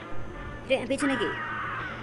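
A cartoon crow's voiced cawing calls, with pitch bending up and down in the first second, over background music.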